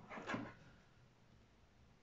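Near silence: faint handling of a pair of pliers and a coil of craft wire in the first half second, then room tone.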